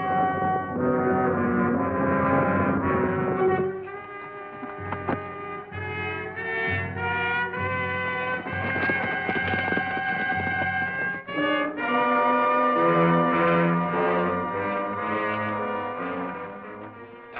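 Orchestral film score led by brass, sustained chords shifting several times, with a pulsing low beat in the middle stretch.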